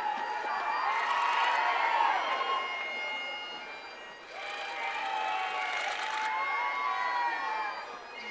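Crowd of onlookers cheering and calling out, with patches of clapping; the noise dips briefly near the middle and then swells again.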